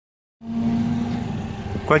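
Alfa Romeo 4C's turbocharged four-cylinder engine idling steadily, starting about half a second in. A man's voice starts at the very end.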